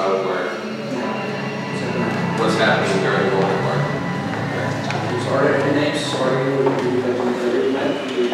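A man talking, with soft instrument playing underneath in a large room.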